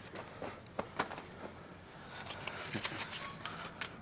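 Light handling sounds as cash is pulled from a jacket and sorted by hand: soft rustling of clothing and paper money with a few sharp little clicks, thickening past the middle.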